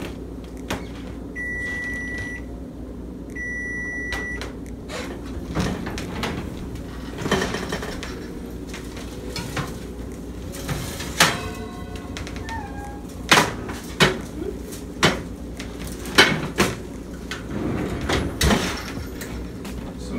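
Electric oven timer beeping twice, each beep steady and about a second long, signalling that the sweet potatoes' baking time is up. Then comes the clatter of the oven being opened and worked, with a run of sharp knocks from the oven rack and pans.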